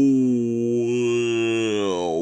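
A man's voice holding one long, low 'ooh' in imitation of whale song, held steady and then sliding down in pitch near the end.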